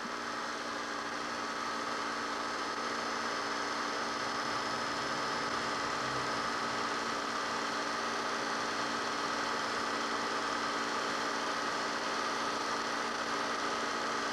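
Steady electrical hum with hiss and several constant tones, rising a little in level over the first two seconds and then holding even.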